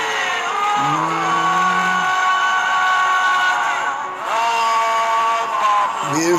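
A gospel song: a man singing slow, long-held notes over musical accompaniment.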